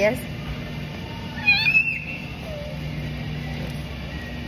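Supermarket room tone: a steady low hum runs throughout. About a second and a half in comes a short high-pitched squeal.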